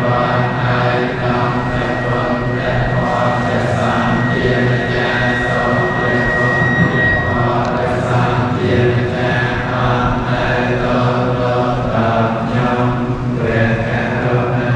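A large group of Theravada Buddhist monks chanting together in unison, a steady low drone of many male voices.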